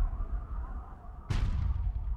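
Sound effect of heavy booming impacts with a deep rumble, standing for the airbag-cushioned Mars lander bouncing across the ground: one dying away at the start and a second sharp boom about a second and a half in.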